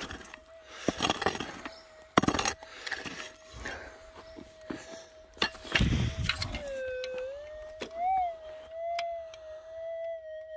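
Minelab GPZ 7000 gold detector's steady threshold hum, with a few pick blows into hard, gravelly clay in the first half. From about seven seconds in the tone dips, then rises and wavers as the coil passes over the dug ground: a target response.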